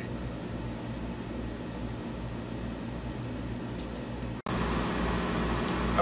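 Steady fan-and-motor hum of a laser engraver switched on and standing by, with a low drone under it. It cuts out for an instant about four and a half seconds in and comes back slightly louder.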